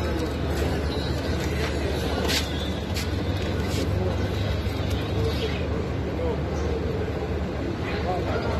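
Steady low rumble of street traffic, with faint background voices and a few short clicks near the middle.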